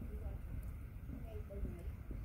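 Faint voices talking in the background over a steady low rumble of wind or handling noise on the microphone.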